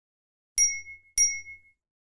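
Two quick bright chime dings, a little over half a second apart, each ringing briefly and dying away: a sound effect marking an in-game system notification before an item's stats are read out.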